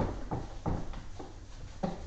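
Whiteboard eraser rubbing across a whiteboard in a few short, uneven swipes.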